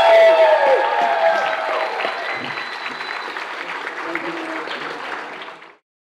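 Audience and panelists applauding, with shouted cheers over it in the first second. The applause slowly fades and then cuts off suddenly near the end.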